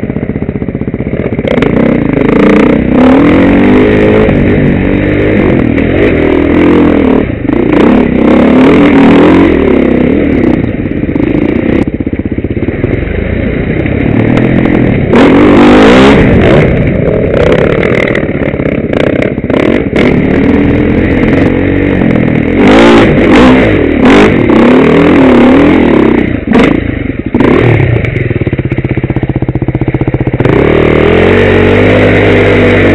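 Enduro dirt bike's engine revving up and down over and over as it is ridden over rough ground, heard close from the rider's helmet, with frequent sharp knocks and clatter from the bike over the bumps.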